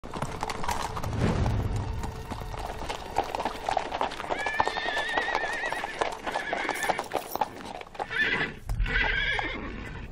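Several horses' hooves clip-clopping on a cobblestone street in quick, overlapping hoofbeats, with horses whinnying in quavering calls about four seconds in and twice more near the end.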